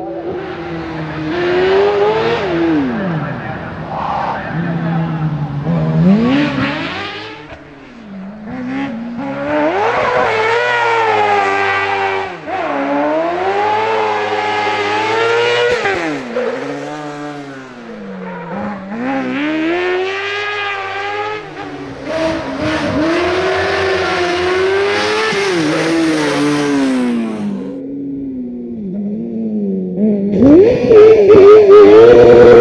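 A small red racing buggy's high-revving engine in competition, its pitch climbing and dropping again and again as it accelerates, shifts and brakes for corners. The sound breaks off a couple of times between passes.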